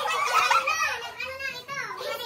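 Several women chattering excitedly over one another in high voices.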